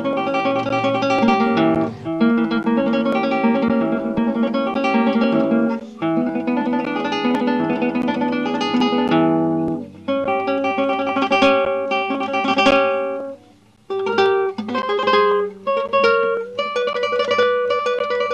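Yamaha nylon-string classical guitar played fingerstyle in the two-string trill: fast repeated notes plucked across two strings with thumb, ring, index and middle fingers (p-a-i-m). It comes in several quick phrases, with a brief stop about fourteen seconds in.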